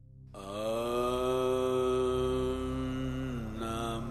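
A devotional Hindu mantra chant fades in. One voice holds a long, steady note, then the pitch drops and a new phrase begins near the end, over a low steady drone.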